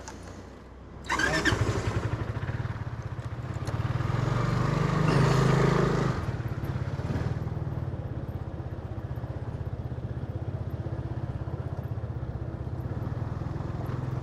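Vespa scooter's engine starting about a second in, swelling as the scooter pulls away between about four and six seconds in, then running steadily as it rides along.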